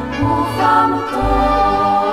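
A choir of religious sisters singing a hymn in held notes.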